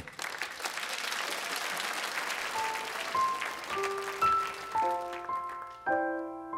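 Audience applauding, the clapping thinning out as a piano begins a slow introduction: single held notes climbing in pitch, filling out into chords near the end.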